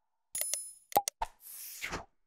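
Sound effects for an animated subscribe button: a few short mouse clicks, with a bright bell-like ding just after the start. A soft whoosh rises in the second half.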